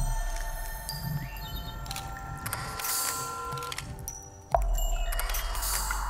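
Film soundtrack of overlapping bell-like chime tones ringing and fading at several pitches. About four and a half seconds in there is a sudden click and a fresh set of ringing tones starts as the short looped clip begins again.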